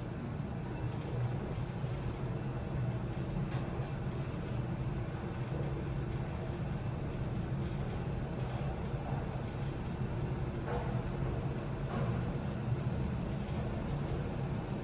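KONE MonoSpace machine-room-less elevator car travelling upward, a steady low hum and rush of the car in motion, with a faint high-pitched tone above it and a few light clicks.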